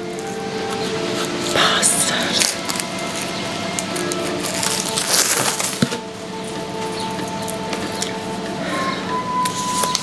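Soft background music with held notes, over paper noise from a roll of wrapping paper being handled, with rustling bursts about two seconds and five seconds in.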